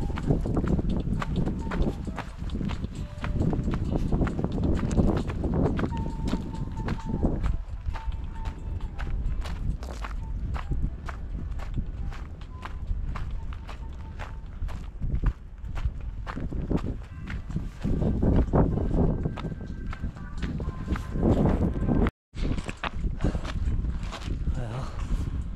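Hiker's footsteps crunching along a dirt and gravel mountain trail, a run of short, irregular steps over a low rumble.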